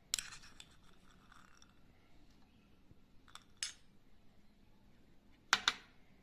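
Steel spoon clinking and tapping against bowls while boiled chickpeas are spooned into mashed potato: a cluster of clinks at the start, two more about three and a half seconds in, and the loudest pair just before the end.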